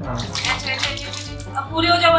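Water splashing in a plastic basin as a small dog is set down into it, for about the first second and a half.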